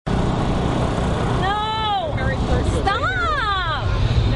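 People calling out in two drawn-out shouts, their pitch rising and falling, over a steady low rumble.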